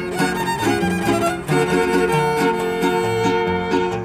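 Trio huasteco playing: the violin carries the melody in an instrumental passage between sung lines, over the rhythmic strumming of a jarana huasteca and a huapanguera.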